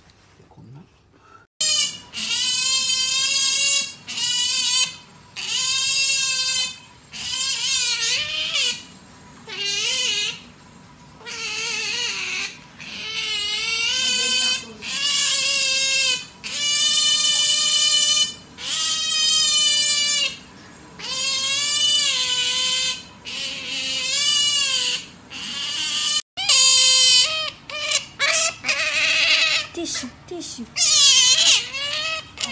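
Asian small-clawed otter calling over and over: a long string of high, wavering squeals, each about a second long, with short gaps between, starting a second and a half in.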